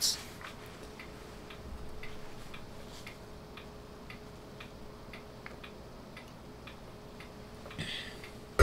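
Faint, even ticking about twice a second over a low steady hum.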